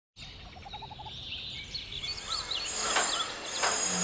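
Birds chirping over a background hiss that swells steadily, with a quick run of rising notes early in the chirping. A few sharp knocks come in from about three seconds on.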